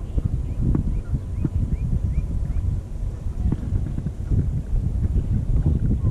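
Wind on the microphone in a steady low rumble while a 13 Fishing spinning reel is cranked, taking up slack line. A faint high chirp repeats about three times a second in the first half.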